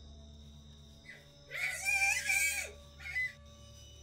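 A high-pitched human scream, about a second long, starting about a second and a half in, then a shorter cry just after three seconds, over a steady, low ambient music drone.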